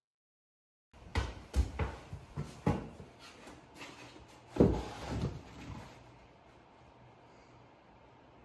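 Irregular knocks, clunks and scrapes of a stone-look wall panel piece being handled and pressed into place against the wall, starting about a second in, with the loudest knock about halfway through. It then settles to quiet room tone.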